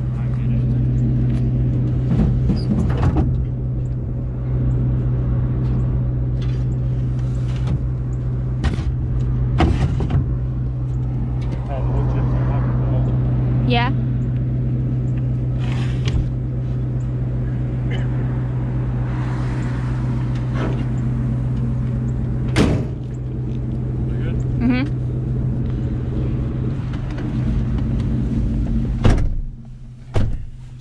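A pickup truck's engine idling with a steady low hum while wooden pallets and boards knock and clatter against each other in the truck bed. There is a sharp knock about two-thirds through, and a door shuts near the end, after which the engine sounds muffled, as from inside the cab.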